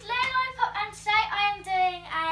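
A young girl singing a short phrase of held notes in a high voice.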